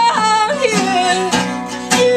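Acoustic guitar strummed in a steady rhythm with a voice singing a sliding, wavering melody line; the pitch falls in a long glide about half a second in.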